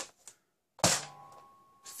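Nerf Hyper Impulse-40 spring blaster being primed by hand: one sharp plastic clack about a second in, trailing off with a faint ring.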